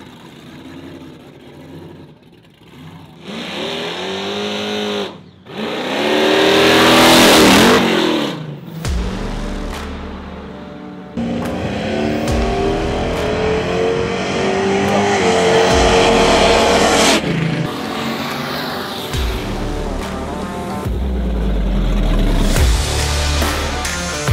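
Supercharged 427 V8 of a 1932 coupe hot rod revving and accelerating, its pitch sweeping up twice, the second time loudest, about seven seconds in. Music plays through the second half.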